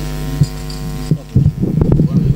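Steady electrical mains hum from the sound system, which cuts out about a second in. After it come irregular low thumps and knocks.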